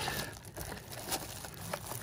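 Plastic shrink wrap on a cardboard trading-card box crinkling faintly as the box is handled and turned, with a couple of light ticks.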